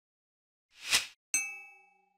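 Audio-logo sound effect: a short swelling whoosh, then a sharp metallic, bell-like ding that rings out and fades slowly.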